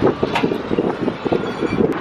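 Freeway traffic passing close by, with wind on the microphone, and a few short metallic knocks as a loose pressed-metal engine undertray is handled after being pulled from under the car.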